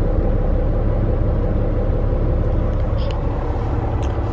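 Steady low rumble of a semi-truck's diesel engine running, heard from inside the cab.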